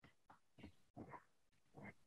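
Near silence on a conference audio line, with a few faint, short, indistinct sounds about a second apart.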